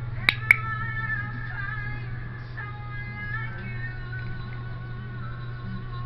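Two sharp clicks close together near the start, the press-and-release of a pet-training clicker marking the cat's sit-up. Background music with long held notes runs under them.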